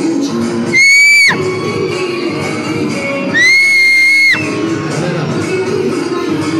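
Dance music playing over a loudspeaker, cut through twice by a loud, shrill whistle: a short one about a second in and a longer one of about a second near the middle, each sliding up at the start and dropping off at the end.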